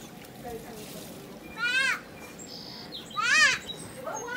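A high voice calling a warbling "woo" twice, about a second and a half apart, each call short and loud.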